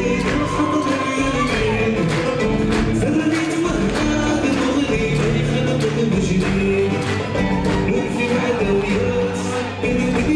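Live Gnawa fusion band playing: guembri bass lute with drums and a steady percussive beat, and singing over it.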